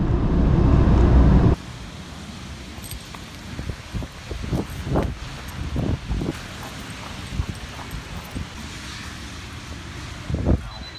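Car cabin road noise while driving on a rain-wet road, loud, cutting off abruptly after about a second and a half. Then footsteps on wet pavement over a steady outdoor hiss of wind and damp traffic.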